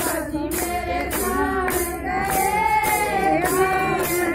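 Group of women singing a Hindu devotional bhajan in unison, kept in time by hand clapping and the jingling of a chimta at about two beats a second.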